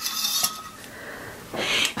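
Wooden clothes hangers clicking and sliding on a clothing rail as garments are pushed along, with fabric rustling.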